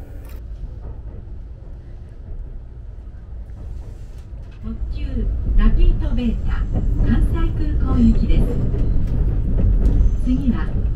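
Nankai rapi:t electric express train heard from inside the carriage, a steady low rumble as it runs. About five seconds in, a voice starts speaking over the rumble and is louder than the train.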